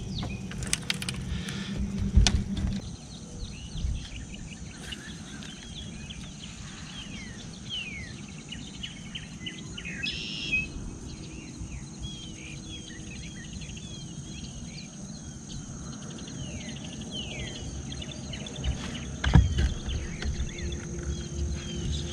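Birds chirping in many quick falling notes over a steady high-pitched drone. A low hum stops about three seconds in, and there are two louder knocks, about two seconds in and near the end.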